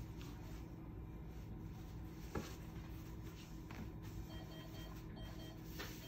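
Green cloth surgical drape being accordion-folded and patted flat on a counter: faint rustling and soft pats over a steady low room hum. A faint, evenly repeated high beep comes in during the second half.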